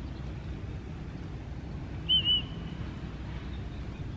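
A short two-note whistle about halfway through, each note rising and falling, over a steady low background rumble.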